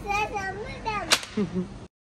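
A young child's high voice vocalising, with a laugh near the end and one sharp crack about a second in; the sound cuts off abruptly just before the end.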